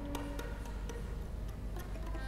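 Irregular, sparse ticks and clicks, a few each second, mixed with brief faint tones.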